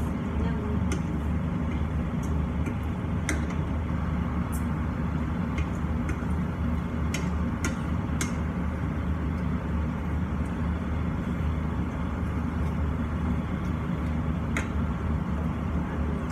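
Steady low hum of a kitchen range hood extractor fan running, with scattered light clicks of a wooden spatula against a frying pan as pasta is stirred.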